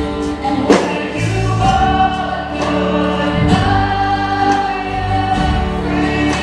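A live worship band: a woman singing long held notes into a microphone over bass guitar, keyboard and drums. A sharp drum hit stands out just under a second in.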